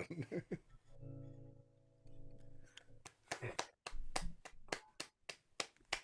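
Acoustic guitar's final chord ringing out and fading, then scattered hand clapping from a few people, heard faintly over a video call.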